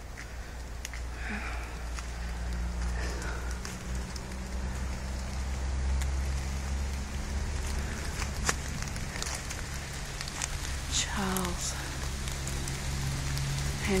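Rain dripping through the rainforest canopy, with scattered sharp drops ticking on leaves and a low rumble from a hand-held phone microphone. A brief voice-like murmur comes about three-quarters of the way through.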